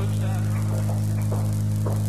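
Steady electrical mains hum on the recording, with a few faint short sounds from the room over it.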